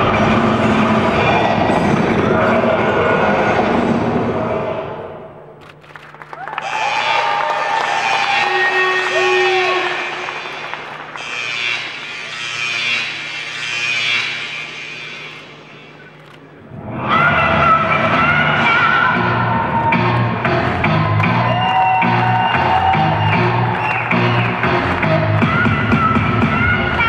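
Music for a bodybuilding free-posing routine. A full, loud section drops away about five seconds in to a quieter, sparser passage, and the full music comes back about seventeen seconds in.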